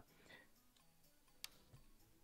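Near silence, broken by one faint sharp click about a second and a half in as a page of a thick, glossy-paper art book is turned.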